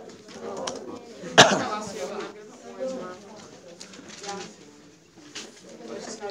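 Low murmur of students talking in a classroom, with one loud cough about a second and a half in.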